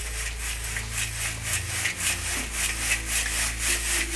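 Excavated soil being shaken through a sifting screen: a rhythmic rasping scrape of about four strokes a second.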